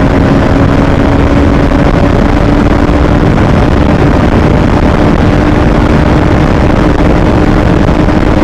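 Bajaj motorcycle engine running steadily at cruising speed, holding one even tone, with heavy wind rushing over the rider's microphone.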